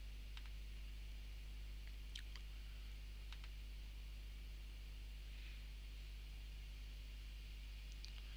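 Four faint computer mouse clicks as Excel's Solver is opened and run, over a low, steady electrical hum.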